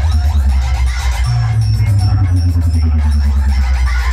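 Electronic dance music played very loud through a DJ 'box' sound system's speaker stacks, dominated by heavy bass.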